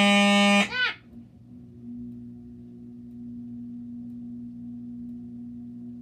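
Fire alarm horn sounding one loud continuous blast, the steady non-pulsing tone of a continuous-type horn, cut off abruptly under a second in. A steady low electrical hum remains afterwards.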